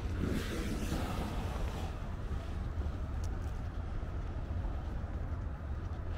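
Steady low outdoor rumble, with a louder rushing swell in the first two seconds and a single faint click about three seconds in.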